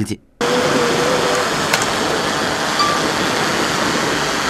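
Steady rushing outdoor background noise, starting about half a second in, with a faint short tone early on and a single click a little before two seconds in.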